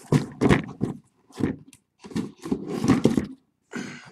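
Cardboard and plastic packaging of a sealed trading-card case being torn open: a run of short, irregular rips and rustles with brief pauses between them.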